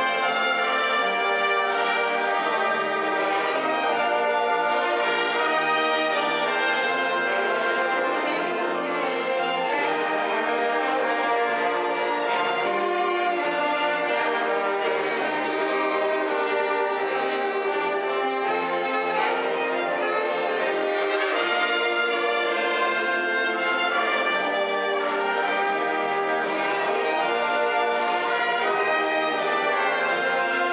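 Brass band of brass and woodwind players (tuba, trumpets, trombones, saxophone, clarinets) playing a piece together under a conductor, at a steady level without a break.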